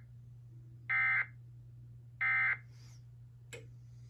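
TFT EAS 911 decoder sending the Emergency Alert System end-of-message code: short, harsh warbling bursts of SAME digital data, the end of one burst and then two more, each about a third of a second long and about 1.3 s apart. A sharp click follows near the end, over a steady low hum.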